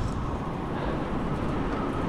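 E-bike being ridden over soft beach sand: a steady rumbling ride noise with a faint steady whine above it.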